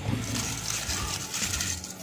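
Crinkly rustling of dried Indian almond (ketapang) leaves being handled and dropped into a plastic bucket of water, with light splashes.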